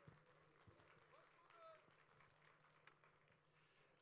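Near silence: a pause in the public-address feed, with only a few faint clicks and a brief faint tone.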